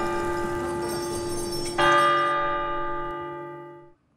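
A church bell tolling: one stroke is still ringing as the sound begins and another strikes just under two seconds in. Its ringing slowly fades and is cut off just before the end.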